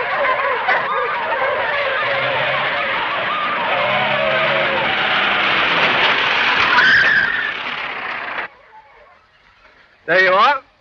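An open roadster's engine running at speed under many overlapping wavering calls. The sound cuts off suddenly about eight and a half seconds in.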